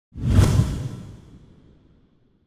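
A whoosh sound effect with a deep rumble under it, swelling suddenly a moment in and fading away over about a second and a half.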